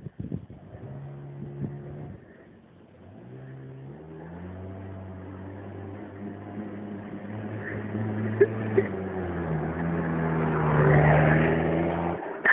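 Small motorbike engine running as the bike comes closer, growing louder over several seconds, its pitch stepping up and down a few times as the rider works the throttle. It cuts off abruptly at the end.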